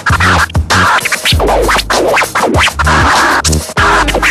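Scratching on the platter of a Denon digital DJ deck: quick back-and-forth scratches, sweeping up and down in pitch, cut over a looping beat with a heavy bass.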